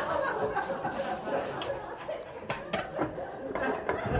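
Laughter and low chatter, with a few sharp metallic clinks about halfway through as a lid is set on a metal soup pot.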